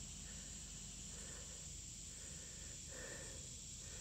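Faint, steady high-pitched drone of insects.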